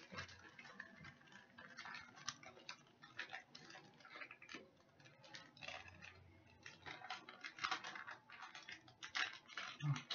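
Faint, irregular crinkling and tapping of a plastic bag being opened and handled as breading mix goes into it.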